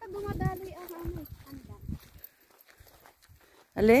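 A person's voice: a drawn-out, sung-sounding vocalisation in the first second, then a short loud rising exclamation near the end. Faint footsteps sound on a gravel path.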